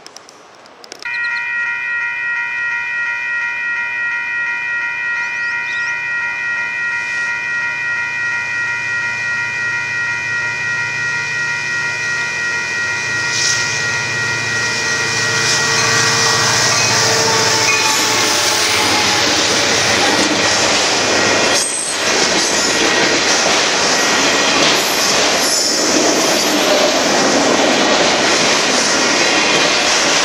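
A railroad grade-crossing bell rings steadily over the growing rumble of approaching Union Pacific diesel locomotives. The bell stops about halfway through as the locomotives reach the crossing. A freight train's cars then roll past with a loud, continuous rail noise.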